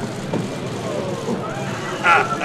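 Steady outdoor street noise with faint, indistinct voices from a crowd.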